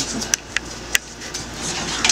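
A metal baking pan knocking lightly against the oven's wire rack as it is handled: a few sharp clicks in the first second over a steady background hum.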